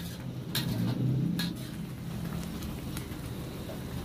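Chili paste sizzling and bubbling in a steel wok as it fries until the oil separates from it, with a metal spatula knocking against the wok three times in the first second and a half.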